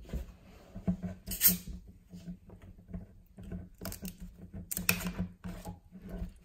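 Plastic screw cap being twisted off a bottle of sparkling mineral water: small clicks and crackles, with short bursts of hiss from the escaping carbonation about a second and a half in and again near five seconds.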